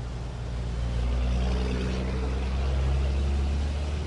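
A motor engine running steadily at a low pitch, with the noisy rush of floodwater underneath; it cuts off abruptly near the end.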